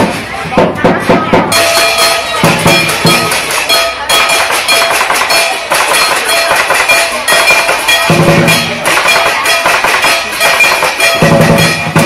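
Chinese lion dance drum and cymbals played live in a fast, continuous beat, with the cymbals ringing over the drum strokes.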